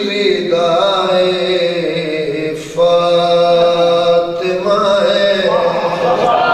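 A man chanting a devotional verse in long held notes, with a short pause about two and a half seconds in.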